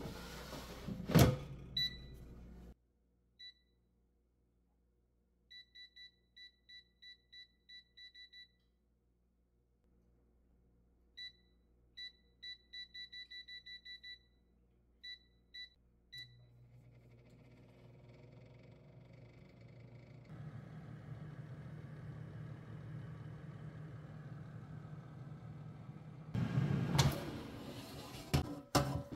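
An air fryer basket shuts with a clunk about a second in. Then comes a run of short, high beeps from the air fryer's touch panel as it is set. From about the middle the fan starts with a steady hum and a rush of air that grows louder as it cooks, and near the end there is a clatter as the basket is pulled open.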